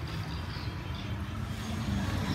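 Street background noise: a low, steady rumble of motor traffic with a faint hum in the second half.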